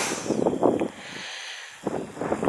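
Wind gusting over the camera microphone: an uneven rushing noise, stronger in the first second, easing off, then picking up again near the end.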